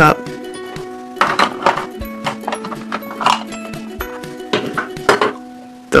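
Light background music plays throughout, with short bursts of handling noise about a second in, about three seconds in and again near five seconds: a plastic toy ice cream cup being filled with a scoop of modelling dough.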